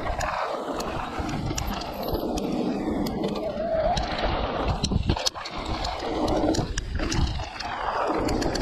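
Wind rushing over the camera microphone and tyres rolling on a packed-dirt trail as an electric mountain bike rides downhill, with scattered clicks and knocks from the bike rattling over bumps.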